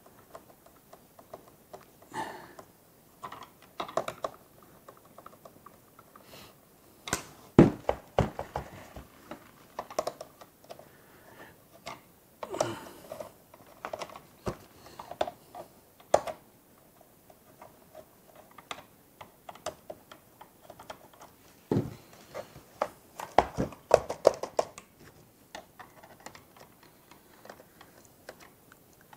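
Irregular clicks, taps and knocks of a plastic RC radio transmitter case being worked on with a screwdriver and handled at a table. There are a few louder knocks, one about a quarter of the way in and another a little past three-quarters, followed by a quick run of clatter.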